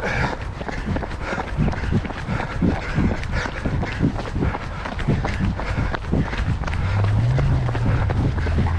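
A runner's own footfalls on a gravel path, a quick even beat of about three strides a second, picked up by a body-worn camera. A low steady hum comes in near the end.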